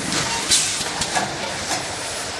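Automatic measuring-cup filling and cup-sealing machine running with a steady mechanical clatter. A short burst of hiss comes about half a second in, and a few sharp clicks follow a little later.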